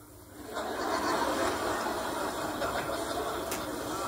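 Audience laughter from a church congregation reacting to a joke: a steady crowd laugh that swells about half a second in and carries on.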